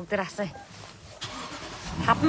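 Lexus LX570's V8 engine cranking and catching near the end, a sudden low rumble after a short voice and a quiet stretch.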